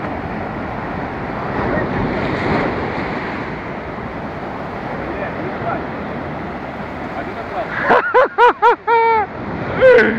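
Surf breaking and washing up the beach, a steady rushing noise. About eight seconds in, a quick run of four or five short pitched calls cuts through it, louder than the surf, with one more just before the end.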